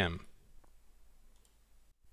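Near silence with a faint single click a little after half a second in, just after a voice trails off at the start.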